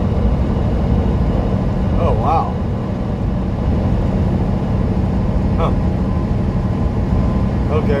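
Semi-truck cruising at highway speed, heard inside the cab: a steady engine drone and road noise with a constant low hum.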